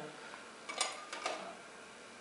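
A few light clicks and taps of metal forceps against plastic labware, a small tube and a petri dish, in two short clusters about a second in, over a steady faint hiss.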